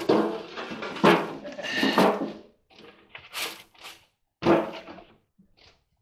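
Handling noises off camera: a series of short knocks and rustles about a second apart, fading to a few faint ones near the end.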